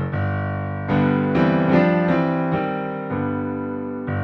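Yamaha AvantGrand N1X hybrid digital piano's grand piano sound played in the low register. Chords are struck about a second in and a few more follow, then they ring and fade.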